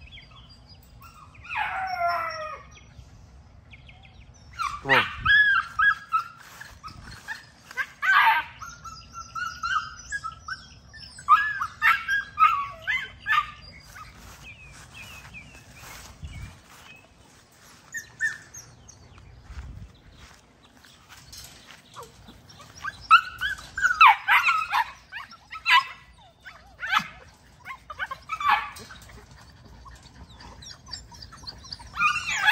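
A litter of American bully puppies yipping and barking in short high-pitched bursts, with a quieter stretch in the middle.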